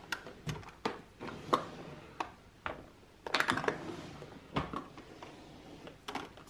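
Makeup compacts and palettes being shuffled in a drawer: a scattering of light clicks and knocks, with a denser clatter about three and a half seconds in.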